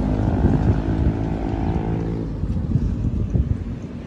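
A motor vehicle's engine passing on the bridge roadway and fading away over about two seconds, followed by quieter traffic rumble.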